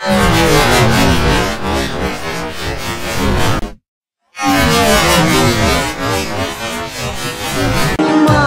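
Heavily effect-processed, distorted music in two loud, smeared segments. It cuts off sharply for about half a second just before the middle, then resumes with a different effect.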